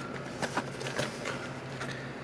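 A low steady hum with a few faint, light clicks and taps as cigar boxes on the shelves are handled.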